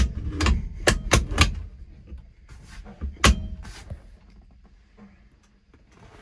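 Freshly installed B&M Pro Gate drag-style shifter worked by hand: the lever clicks through its gates, a quick run of about five sharp clicks in the first second and a half, then one louder click a little after three seconds.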